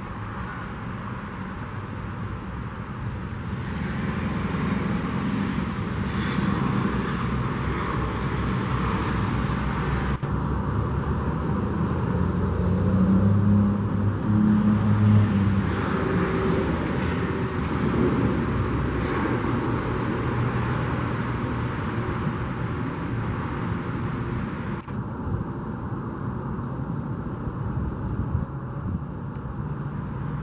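Steady low rumble of road traffic and vehicle engines, swelling louder about halfway through.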